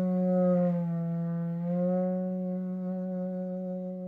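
Duduk, the Armenian double-reed woodwind, playing one long low note that dips slightly in pitch about a second in, comes back up, then holds and slowly fades.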